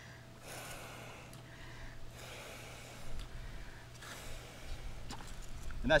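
A few breaths blown into a scuba BC's oral inflator mouthpiece, soft puffs of air with pauses between, inflating the vest by mouth while the inflator button is held in.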